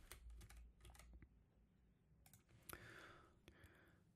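Near silence with a few faint computer keyboard and mouse clicks, a slightly louder pair a little past halfway.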